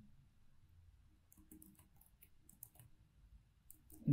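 Faint computer keyboard typing: a scattered run of light key clicks that starts about a second in.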